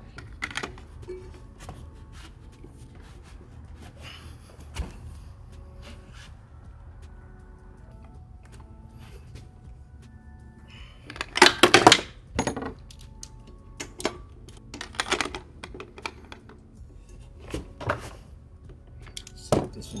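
Socket wrench on a lawn mower's steel blade bolt, turned with a length of PVC pipe as a breaker bar: a burst of loud metal clicking and clanking about eleven seconds in as the stuck bolt is worked loose, followed by scattered single metal clinks.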